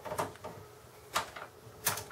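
A Phillips screwdriver backing out the single screw that holds down the motherboard tray in a Dell OptiPlex GX270: three short, light clicks, the sharpest near the end.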